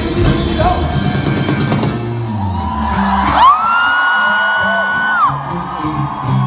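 Indie rock band playing live in a hall. A full-band passage thins out about halfway, leaving one long high held note that slides up into place and falls away, over a steady hi-hat tick. The bass and drums come back in near the end.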